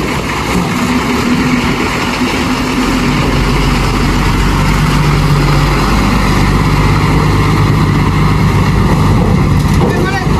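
Tata tipper truck's diesel engine running as the truck pulls off and drives past close by, growing louder from about three seconds in.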